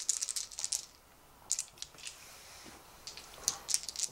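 A handful of six-sided dice clicking together as they are gathered and shaken in a hand, in three short bursts of rattling: near the start, about one and a half seconds in, and near the end.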